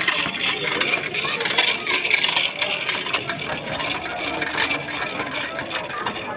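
A crowd talking, with rattling and scraping from a chain hoist and its rope rigging.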